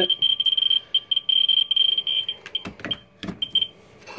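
Ludlum Geiger survey meter clicking very rapidly, the counts running together into a buzzing chatter as its probe sits on a uranium-glass plate at close to 2,000 counts per minute. Just over halfway through the clicks thin out and stop, with a few handling knocks.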